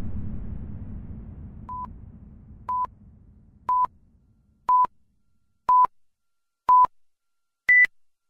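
Countdown timer beeps, one short electronic beep a second. Six beeps sound at the same pitch, then a higher final beep marks zero. Under the first half, a low rumbling sound fades away.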